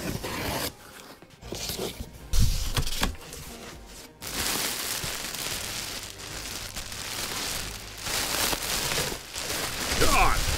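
Packing tape being cut and torn open on a cardboard box, with a thump about two and a half seconds in. From about four seconds in comes continuous crinkling and rustling of plastic air-pillow packing being pulled out of the box.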